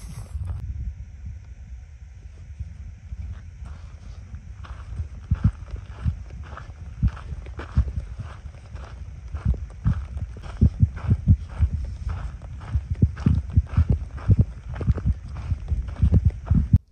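Footsteps of a hiker walking on a sandy dirt trail, at a steady pace of about two steps a second, clearer from about four seconds in, under a steady low rumble.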